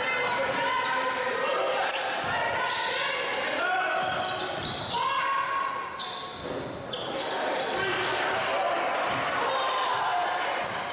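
Basketball game sound in a gym: indistinct voices of players and spectators calling out, with a ball bouncing on the hardwood court.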